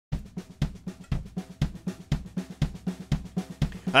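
A steady drum beat, about four strokes a second, with deep bass-drum hits and sharper snare hits in a regular pattern, opening a country song.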